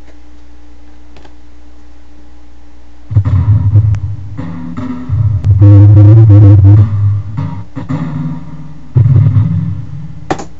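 Notes played on the Edirol HQ Orchestral software instrument over MIDI: a low-pitched phrase of several notes, some with vibrato, starting about three seconds in after a stretch of steady low hum.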